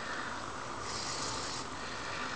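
Hobby servos of a Lynxmotion BRAT six-servo biped robot whirring as it takes a walking step: one high buzz lasting under a second, starting about a second in, over a steady faint hiss.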